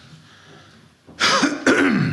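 A man clearing his throat twice in quick succession, about a second in, after a moment of quiet room tone.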